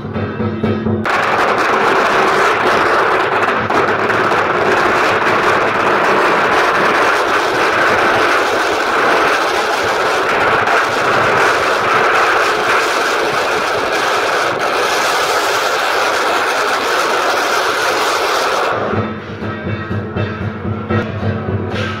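A long string of firecrackers going off in a dense, continuous crackle of rapid bangs, starting about a second in and stopping just before the end. Procession music with drums is heard briefly at the start and again at the end.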